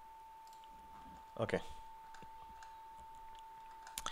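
A few faint clicks of computer keyboard keys, over a steady, thin high tone.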